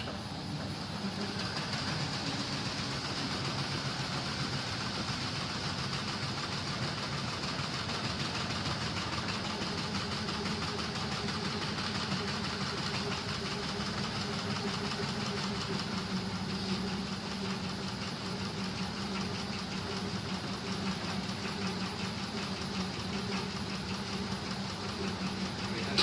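Vibration test table running steadily, shaking a taxi-roof LED sign in its aluminium frame: a continuous mechanical hum with a fast, dense rattle, building up over the first couple of seconds and then holding.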